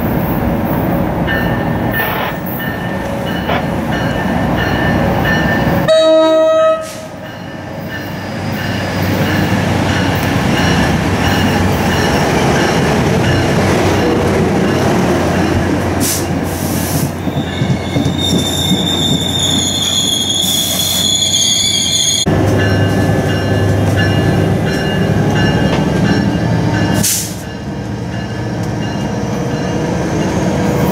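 New Jersey Transit double-deck passenger train approaching and running past at speed. Its horn sounds early on over the rumble of wheels on rail, and high wheel squeal rings out for a few seconds past the middle.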